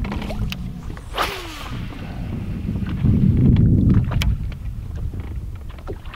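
Wind rumbling on the microphone out on a boat on open water, loudest about three to four seconds in. A steady low hum fades out about a second in, and a short swish falling in pitch comes just after it.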